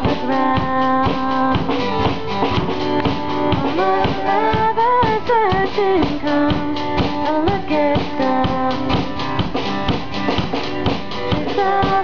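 Live band playing an instrumental intro: strummed acoustic guitar and a sliding violin melody over a drum kit keeping a steady beat.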